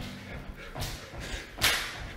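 Two short swishing whooshes, the second and louder one near the end.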